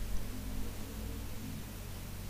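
Steady faint hiss with a low hum underneath, and no distinct event.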